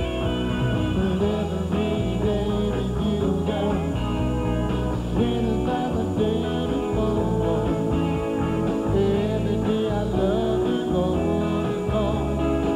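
A live band playing a pop-rock song, with electric guitar and keyboards, and a man singing lead into a handheld microphone.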